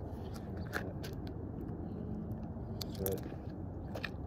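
Steady low wind rumble on the microphone, with a few light scuffs and clicks of footsteps on gritty pavement.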